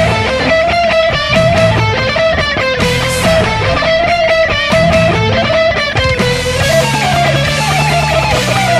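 Electric guitar played over a rock band backing track with bass and drums; a melodic line moves in held notes with slight wavering.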